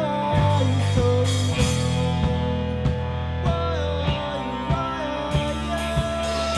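Live rock band playing: electric guitars and bass over a drum kit keeping a steady beat, a hit a little under twice a second, with a sung melody line.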